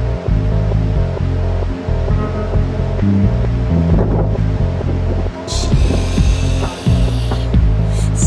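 Music with a deep bass line moving in steps. A high hiss comes in about five and a half seconds in and lasts about two seconds.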